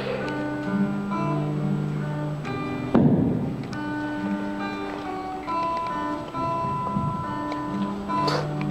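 Acoustic guitar played live in a slow song, with notes held and chords changing every second or so, and a single loud thump about three seconds in.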